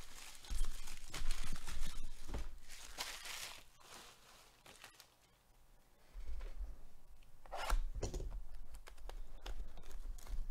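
Trading card packaging being torn open and crinkled by hand, in rustling bursts with a quieter pause about midway and a sharper tear near the end.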